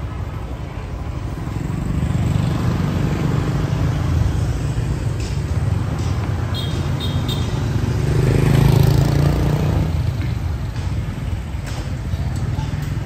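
Street traffic ambience with motorbike engines passing. One passes loudest about eight to nine seconds in, and three short high beeps sound just before it.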